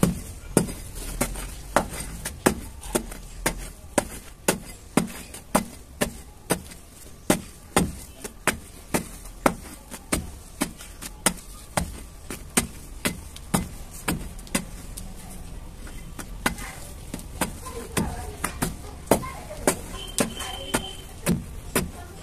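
A small metal tool repeatedly striking and chipping hardened chunks of red dirt, sharp knocks about twice a second. The dirt has set hard and will not break by hand.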